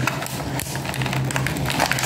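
Cardboard box and plastic toy packaging being handled and pulled apart: a string of small irregular crackles and rustles over a steady low hum.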